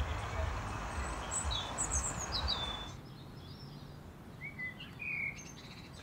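Small birds chirping in short, quick calls over a steady background noise. The background drops away suddenly about halfway through, leaving a few clearer chirps.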